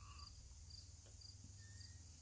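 Near silence with faint crickets chirping outdoors in an even rhythm, about two to three chirps a second.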